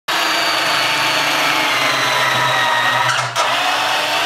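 Cordless drill motor running steadily, with a brief drop-out and restart about three and a half seconds in.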